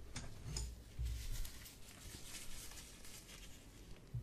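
Faint, close-up rustling and light scratching from a latex-gloved hand and a wooden tool handled right at the microphone, with a few soft clicks.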